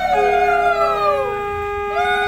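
Several conch shells (shankha) blown together in long held notes, some bending up and down in pitch, with one steady lower note coming in just after the start and held on.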